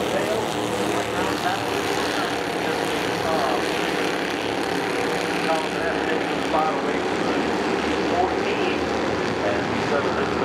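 A pack of Bandolero race cars running laps together, their small single-cylinder Briggs & Stratton engines making a steady, continuous drone. Faint voices are heard over it.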